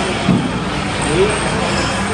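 Steady, loud background din of a busy indoor play centre, with two short voice sounds, one near the start and one about a second in.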